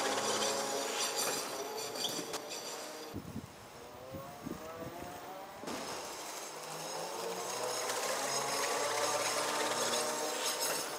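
Vectrix Maxi-Scooter's electric drive motor whining as the scooter moves, its pitch gliding up and down with speed. The whine drops away and is quieter for a couple of seconds in the middle, then builds again.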